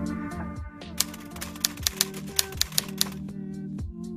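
Intro music with a typewriter-style typing sound effect laid over it: a quick, uneven run of about a dozen sharp key clicks from about a second in until about three seconds in.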